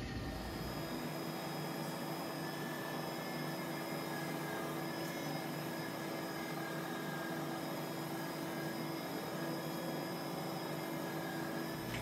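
Electric potter's wheel running at speed while clay is centered on it: a steady whir with a faint constant whine.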